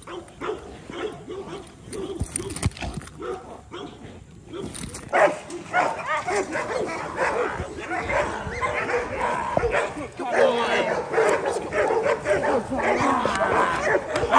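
Rottweiler barking and growling during bite work on a burlap bite pillow held by a decoy, getting louder from about five seconds in, with a person's voice mixed in.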